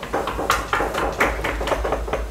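A quick, irregular run of clicks and knocks, about five a second, over a low rumble.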